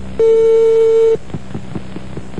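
Telephone line tone: a single steady beep of about a second, the ring-back signal of a call being placed again, followed by faint clicks on the line.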